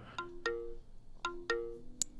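Quiet chiming notes, struck in pairs a quarter second apart and repeating about once a second, each ringing briefly at a clear pitch.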